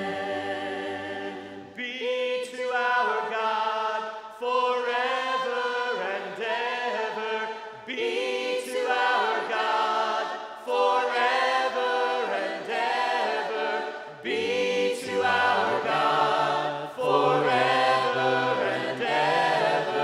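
Unaccompanied church singing by a group of voices in harmony, moving from unison into parts, in phrases of a few seconds with short breaths between: "be to our God forever and ever ... Amen."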